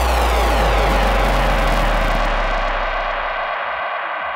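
Hard trance breakdown with no beat: a falling whooshing synth sweep over a held deep bass note. The treble of the sweep is cut away about two seconds in, and the bass fades out near the end.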